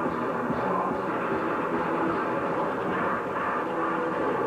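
A noisecore band playing live: distorted electric guitars and bass in a dense, unbroken wall of noise, with a few held pitches showing through.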